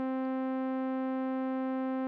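Thor software synthesizer holding one steady, buzzy note from its analog oscillator, pitched around middle C. The step sequencer is repeating a single step with the gate length and sustain all the way up, so the note runs on without a break.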